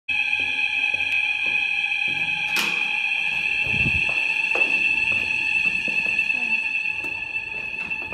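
A steady high-pitched tone, one unchanging pitch with overtones, held throughout and cutting off abruptly just after the end. A few faint clicks and a short low rumble come about four seconds in.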